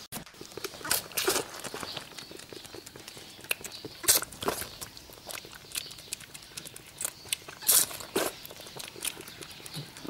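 A baby goat's hooves clicking on a tiled floor, then the kid sucking water from a feeding bottle in quick, greedy pulls: a run of irregular short clicks and slurps.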